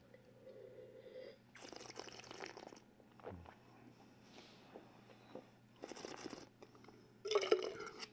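Faint wet mouth sounds of wine tasting: a sip of sparkling wine being slurped and swished in the mouth, with a short, louder wet sound near the end as he spits into a metal spit cup.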